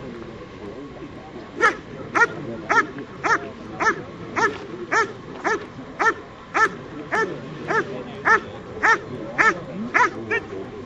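German shepherd dog giving a steady run of barks, nearly two a second, beginning a couple of seconds in: the rhythmic guarding bark of protection work, aimed at a helper holding a protection sleeve.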